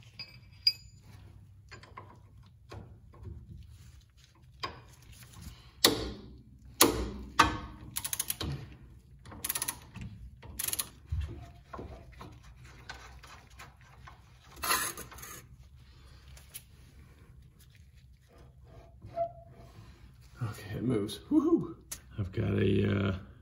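Socket ratchet and steel hand tools working on a car's lower control arm through bolt: scattered sharp metallic clicks and knocks, bunched mostly in the middle, over a low steady hum.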